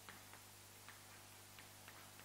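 Chalk faintly tapping and scratching on a blackboard as words are written: a few short, irregular ticks over a steady low hum.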